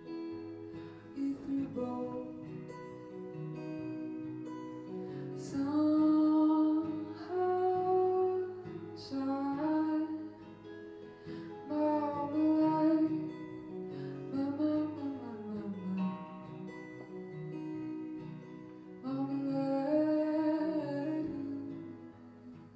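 A woman singing long held notes over acoustic guitar.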